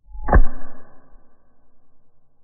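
Thermal magnetic circuit breaker tripping: the bimetallic strip is pushed past its catch and the spring-loaded moving contact arm snaps away from the stationary contact. One sharp metallic snap about a third of a second in, with a short ringing that fades over about a second.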